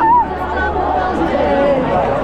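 Chatter of many people talking at once, loud and close, with no one voice standing out.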